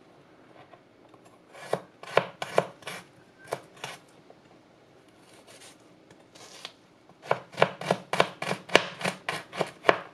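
Chef's knife chopping garlic cloves on a plastic cutting board: a few spaced cuts in the first half, then a quicker run of chops, about four a second, in the last three seconds.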